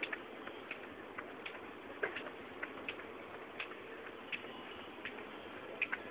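Skipping rope ticking against a concrete floor as it turns, a short sharp click about every three-quarters of a second, now and then doubled.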